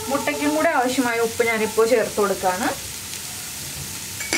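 Sliced onions, green chillies and curry leaves sizzling in hot oil in a nonstick frying pan, a steady hiss. A voice talks over it for the first two and a half seconds.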